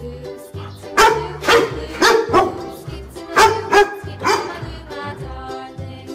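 A dog barking, about seven barks between one and four and a half seconds in, over background children's music with a steady bass beat.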